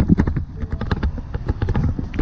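Irregular knocks and clicks of a person climbing out through a pickup truck's open door and stepping onto pavement, over a low rumble of handling on a hand-held camera.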